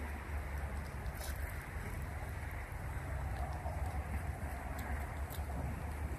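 Steady low wind rumble on the microphone outdoors, with a few faint, sharp high clicks.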